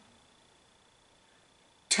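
Near silence: room tone in a pause between a man's words, with a faint steady high-pitched whine.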